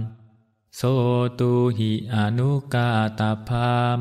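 A Buddhist monk chanting a Pali verse in a male voice held on a nearly level pitch, with a short pause just after the start before the next line.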